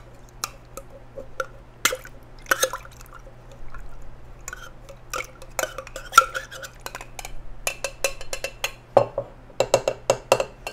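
A spoon stirring inside a metal cocktail shaker tin with mint leaves and liquor, giving irregular metallic clinks and small liquid sounds, busier near the end.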